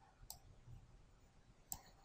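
Near silence with two faint clicks of a computer mouse, one just after the start and one near the end.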